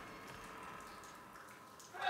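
Faint, steady held drone from a film trailer's soundtrack, slowly fading, with a couple of soft ticks.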